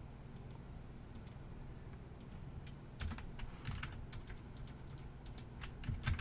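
Faint computer keyboard typing: scattered key clicks, with a cluster of taps around the middle and more near the end, over a low steady hum.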